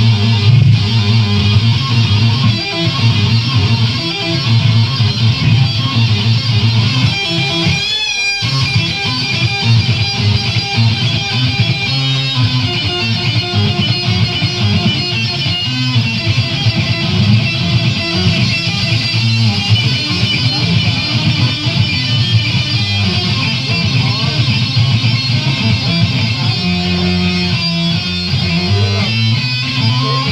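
Black metal band playing live, with distorted electric guitar and bass on a raw bootleg tape recording.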